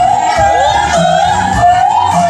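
A woman singing a long, wavering held note into a karaoke microphone over a soul backing track with a steady low beat.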